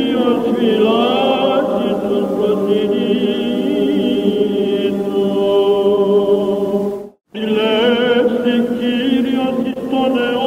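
Greek Orthodox Byzantine chant: a male cantor sings an ornamented, wavering melody over a steady low held drone, in an old recording with no high treble. The sound cuts out completely for a moment about seven seconds in, then the chant resumes.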